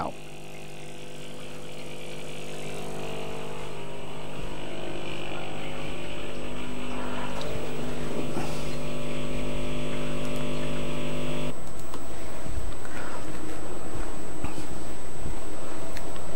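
Gaggia Anima Prestige bean-to-cup machine running the rinse stage of its descaling cycle: the water pump buzzes steadily and grows louder, then stops about eleven seconds in, leaving a noisier hiss of water flowing through the machine.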